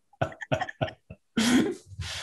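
Laughter: a run of short, breathy bursts of laughing, then a longer laugh about one and a half seconds in.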